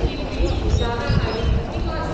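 Running footfalls of marathon runners on the road, a run of dull thuds, with indistinct voices around them.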